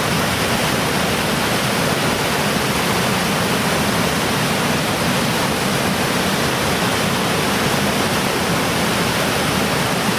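Fast mountain stream cascading over rocks in white water: a loud, steady rushing.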